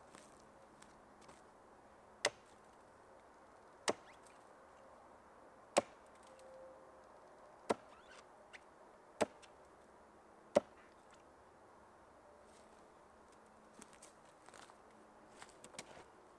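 A hatchet chopping at the lower end of a wooden stake: six sharp single strikes, one about every one and a half to two seconds.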